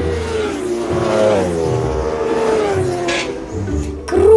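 Racing motorcycle engine at high revs going by, its pitch gliding steadily down over a few seconds.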